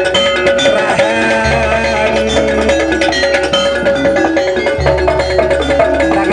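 Javanese jaranan gamelan music: metal mallet percussion over a held melody, with low tones swelling twice.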